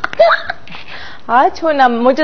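A woman laughing: a short rising squeal just after the start, a breathy pause, then her voice comes back in the second half.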